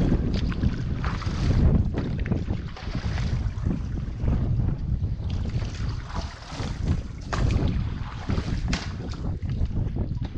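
Wind buffeting the microphone in an uneven low rumble, over water sloshing and splashing around a rubber dinghy's hull.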